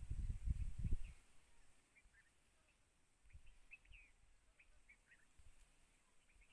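Faint, scattered bird chirps in the background, short high notes repeating irregularly. A low muffled rumble fills the first second.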